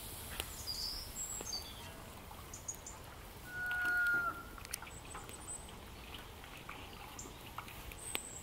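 Small birds chirping in short, high calls, with one louder held call about halfway through. A few light knocks as stuffed quinces are set down in a cast-iron pan.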